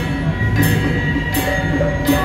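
Hand cymbals clashing and small hand gongs ringing in a temple percussion troupe's steady beat, a crash about every three-quarters of a second over the sustained ring of the gongs.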